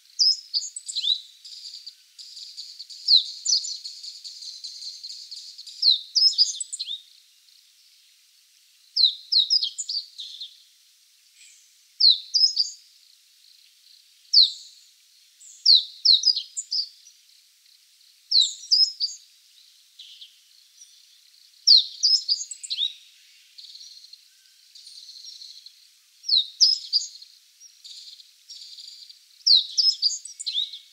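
Meadow bunting singing short phrases of quick, high, down-slurred notes, a phrase every two or three seconds.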